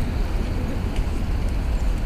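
City street background noise: a steady low rumble of traffic.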